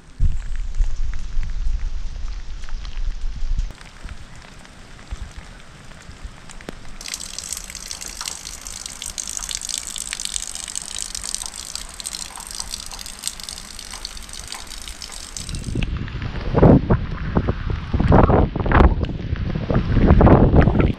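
Heavy rain falling, a steady hiss that turns brighter about seven seconds in. In the last few seconds strong gusts of wind buffet the microphone in uneven surges.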